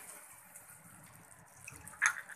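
Faint wet stirring: a wooden spatula working thick cream and onions in a nonstick pan.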